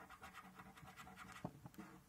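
A coin scratching the silver latex panel off a National Lottery Instant £100 paper scratchcard: a faint, quick run of short scraping strokes, a few louder ones about halfway through.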